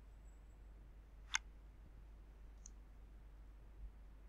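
Quiet room tone with a steady low hum. One sharp click about a second in, and a much fainter tick a little later.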